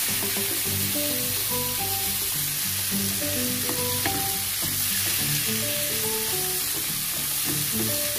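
Chayote pieces sizzling in hot oil in a frying pan as a wooden spoon stirs them, with background music of short, simple melodic notes.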